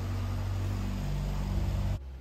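Small motorboat engine running with a steady low drone as the boat moves along the canal below, cutting off suddenly at the end.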